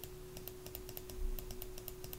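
Computer keys tapped in a quick, irregular series of light clicks, about four a second, each press stepping the transceiver's power-amplifier bias setting up by one while the bias current is raised toward 100 mA. A faint steady hum lies underneath.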